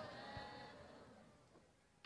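Near silence: faint background room tone through the microphone, with a single tiny tick about a third of a second in.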